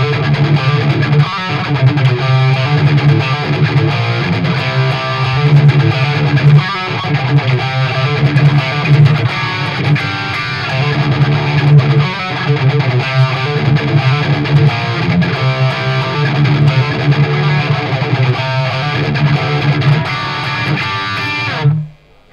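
Distorted electric guitar, a Gibson Les Paul in drop D tuning through a Randall amplifier, playing a heavy rock verse riff with a rhythmic pattern on the low strings. It stops abruptly near the end.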